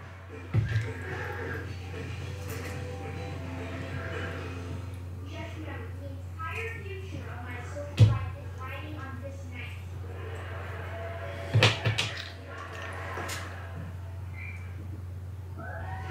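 Small metal wheel collars and screws clicking as they are picked out and set down on a wooden workbench: a few sharp clicks, the loudest about halfway through and two more close together soon after. A steady low hum runs underneath, with faint voice-like sounds in the background.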